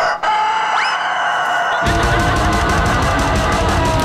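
A rooster crowing: one long crow that starts suddenly and holds on. About two seconds in, music with a steady beat comes in under it.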